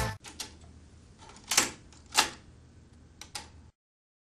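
The music cuts off at the start, then a handful of short, sharp clicks over faint hiss, the two loudest near the middle.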